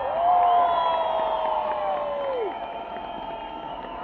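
Concert crowd cheering and screaming with the band's music stopped. One voice holds a long high note over the crowd and drops away about two and a half seconds in.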